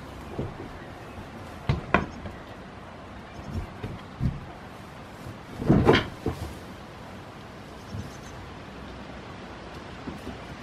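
A goat kid's hooves knocking on a wooden shed floor: a few scattered knocks, with the loudest cluster about six seconds in.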